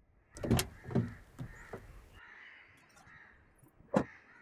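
Car rear door and a woman getting into the back seat: a couple of short knocks in the first second, rustling as she settles, then the door shutting with a sharp click right at the end.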